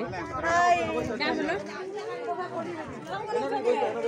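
People chatting, with voices talking through the whole stretch.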